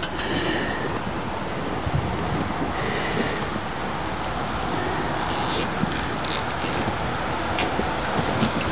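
A plastic cable tie being pulled tight around the pedal-sensor cable at the bike's bottom bracket: a short burst of ratcheting clicks about five seconds in, and one more click near the end. A steady low rumble lies under it.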